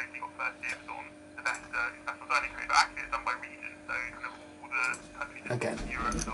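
Podcast speech received over single sideband by a homebrew 40m superhet receiver set for high side VFO injection, heard through its small speaker: a thin, narrow-band voice with a steady low hum underneath.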